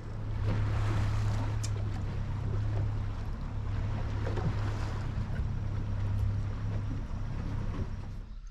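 A dive boat under way: its engine drones steadily and low beneath a hiss of rushing water and wind.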